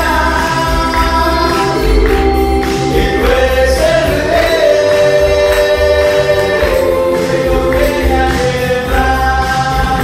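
Live Spanish-language gospel worship song: a man sings lead through a PA microphone over electric keyboards, guitars and a steady bass beat, with hand clapping along.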